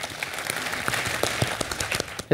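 Studio audience applauding: many hands clapping in a dense, even patter.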